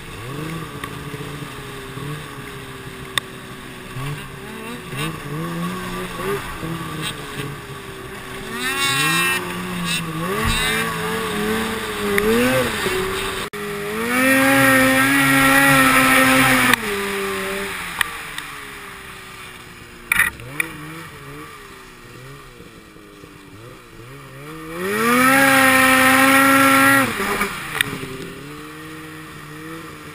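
Snowmobile engine revving up and down with the throttle, held at full revs for two long stretches, one about halfway through while the sled skims across open water and one near the end.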